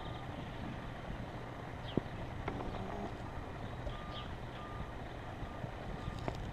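Outdoor ambience: a steady low rumble with a sharp tap about two seconds in, two short faint beeps a little past the middle, and a few brief high chirps.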